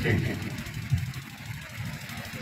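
A pause in a man's speech over a microphone and loudspeakers: his voice trails off, leaving a low steady rumble underneath.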